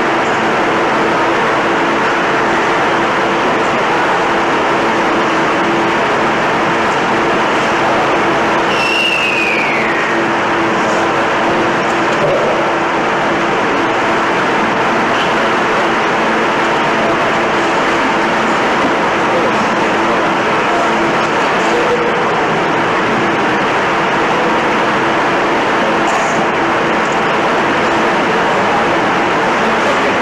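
Steady, loud noise hiss with a constant low hum underneath, and indistinct voices in the background. A brief falling whistle-like tone sounds about nine seconds in.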